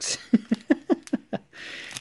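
A man laughing: about six quick, short chuckles in a row, fading away over about a second.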